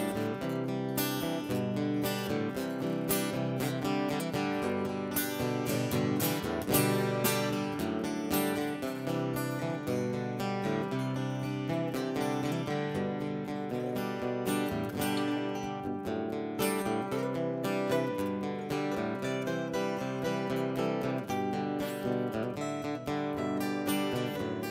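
Two acoustic guitars strumming the instrumental intro of a country song in a steady rhythm, with no vocals yet.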